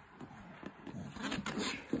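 A dog mouthing and chewing a plush fox toy: soft, irregular rustling with small clicks, a little busier in the second half.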